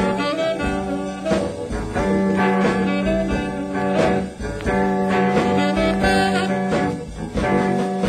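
1957 blues record playing from a 45 rpm single: an instrumental stretch of guitar and band with a steady beat and no singing.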